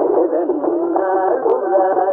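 Carnatic concert music in raga Poornachandrika: a voice carries an ornamented melodic line with wavering, oscillating notes. It is an old recording with a narrow range that cuts off above about 2 kHz.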